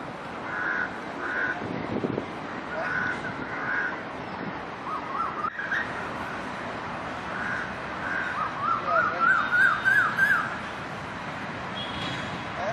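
Crows cawing repeatedly, in pairs of short calls during the first few seconds and a quicker run of calls near the end, over a steady background hiss.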